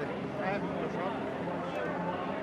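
Speech only: men's voices talking at a lower level, with no other distinct sound.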